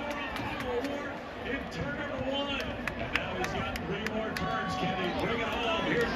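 Grandstand crowd chatter: many voices talking over one another at once, with scattered sharp clicks.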